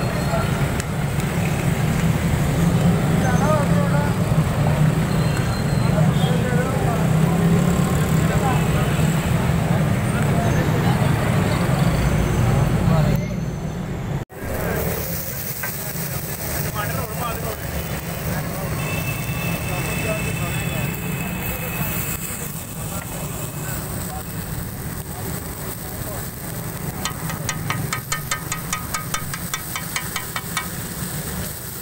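Busy roadside traffic with people talking, then after a brief dropout about halfway, cooking on a large flat iron tawa, ending in a rapid run of metal spatula strikes on the griddle as the saag is chopped and mixed.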